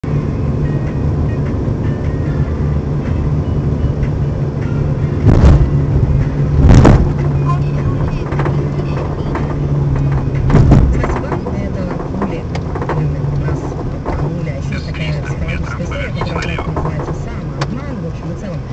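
Car driving over a rough, patched road, heard from inside the cabin: a steady engine and tyre drone broken by heavy knocks from the rear suspension. There are two loud bangs about five and seven seconds in, another near eleven seconds, and lighter knocks after. The knocking is the sign of a rear shock absorber torn from its mount.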